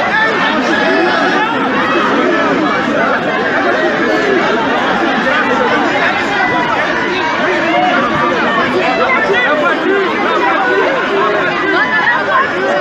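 Dense crowd babble: many voices talking and calling out at once, close around the microphone, steady and loud with no single voice standing out.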